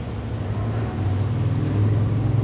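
Steady low-pitched hum in a pause between spoken sentences, growing a little louder toward the end.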